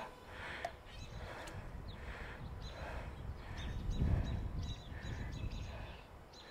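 Outdoor background with birds chirping repeatedly, and a low rumble of wind that swells about four seconds in.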